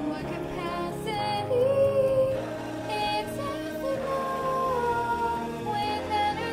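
A woman singing sustained, gliding phrases of a pop song over backing music.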